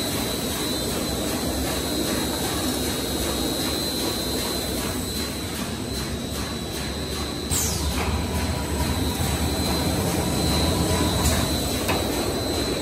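Spiral paper-tube winding machine running steadily, its drive and winding belt giving a continuous mechanical noise with a steady high whine. A short falling squeak comes about halfway through, after which the machine runs slightly louder.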